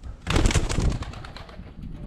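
Pigeons in a coop: a flurry of rapid wing flapping begins about a quarter second in and lasts about a second, then dies down.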